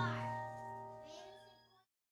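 The final piano chord of the accompaniment ringing out and fading away, gone just before the end.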